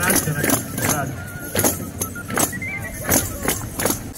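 Hand-held jingle tambourines struck and shaken in a steady dance beat, about two strikes a second, their metal jingles ringing with each hit.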